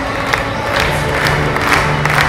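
Music playing over a crowd clapping and cheering.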